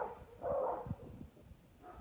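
A dog barks once, faint and rough, about half a second in.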